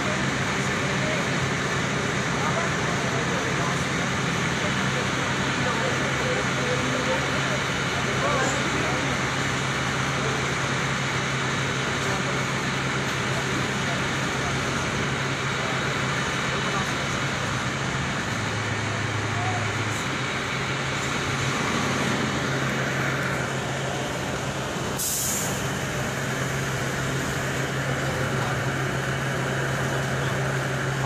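Idling fire truck engines giving a steady low hum, with voices in the background. A short, sharp hiss comes about 25 seconds in.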